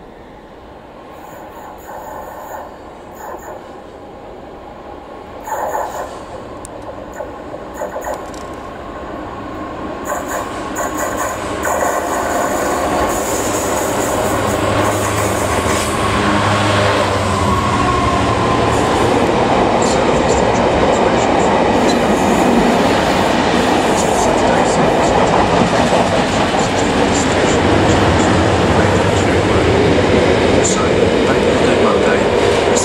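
A Class 66 diesel freight locomotive, with its two-stroke V12 engine, approaches and passes, growing steadily louder over the first half. Its train of box wagons then follows with a continuous rumble and clatter of wheels on the rails.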